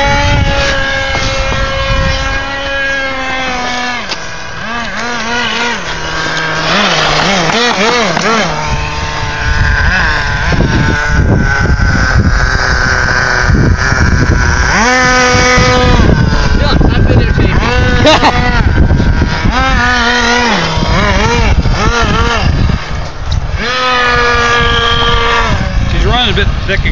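Small glow-fuel two-stroke engine of an HPI nitro RC truck running at high revs, its pitch repeatedly climbing and dropping back as the throttle is worked while it drives.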